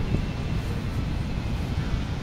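Steady low rumble of outdoor traffic noise, even throughout, with no distinct event standing out.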